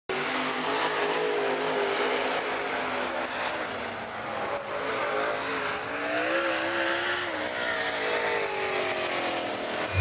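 Race car engines running, their pitch wavering up and down.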